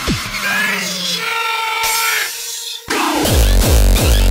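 Electronic bass-music track: the kick pattern stops at the start, leaving a short breakdown of held synth tones with almost no bass. About three seconds in, the track drops back in suddenly with heavy bass pulsing about three times a second.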